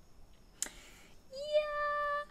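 A woman's voice: a quick breath in, then a high, steady sung-out vowel held for about a second.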